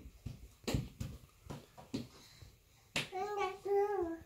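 A crawling baby's hands slapping a wooden laminate floor in a run of irregular taps, followed near the end by a small child's short vocal sound.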